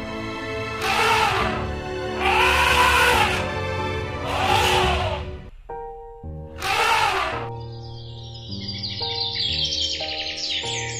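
Elephants trumpeting: four harsh, loud calls, each rising and then falling in pitch, the longest about a second in duration, over steady background music. Birds start chirping near the end.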